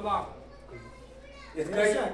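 A man speaking into a microphone over a hall's loudspeaker. He breaks off for about a second, when only faint background voices are heard, then starts speaking again near the end.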